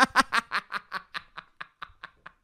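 A man laughing: a run of short laughs, about five or six a second, loud at first and fading away.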